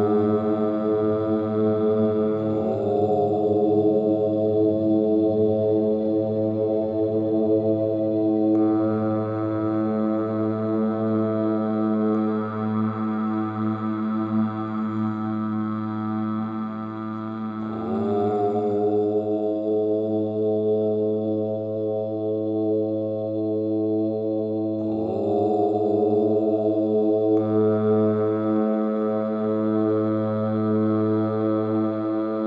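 Long, low, sustained mantra chant over a steady droning tone, with each new chanted syllable swelling in as the mouth opens: a few seconds in, a little past halfway, and again later.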